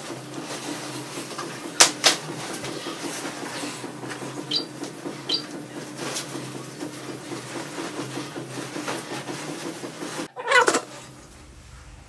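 A steady low hum in a small room with a few handling sounds: two sharp clicks about two seconds in, two faint short high chirps near the middle, and a brief rustle near the end.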